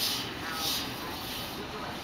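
Indistinct voices of people talking over a steady background noise.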